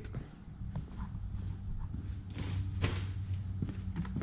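Plastic water bottles being placed into a hard-shell cooler one after another: a few light, scattered knocks over a low steady hum.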